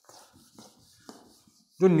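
A whiteboard being wiped clean, heard as a faint, uneven rubbing. A man's voice starts just before the end.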